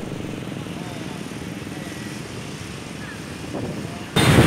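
Traffic stopped in the street: idling motorcycle and car engines make a steady rumble, with faint voices in the mix.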